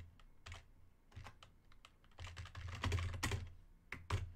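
Typing on a computer keyboard: a few scattered keystroke clicks, then a quicker run of keystrokes about two seconds in.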